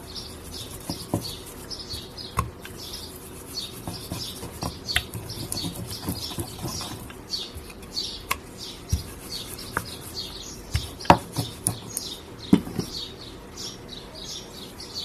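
Small birds chirping in the background, several short calls a second, with scattered knocks and taps on a wooden board as dough is rolled out with a wooden rolling pin and handled; the two loudest knocks come near the end.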